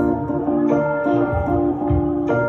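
Digital piano played with both hands: short notes repeating about three times a second in the middle register, over low notes that sound with some of them.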